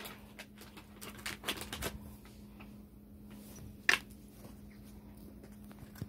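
Quiet room with a faint steady low hum, a few soft taps and small handling noises, and one sharper tap about four seconds in.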